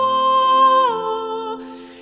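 Soprano voice holding a long, steady note that steps down to a lower note and fades away, over low piano notes, with a short breathy noise near the end.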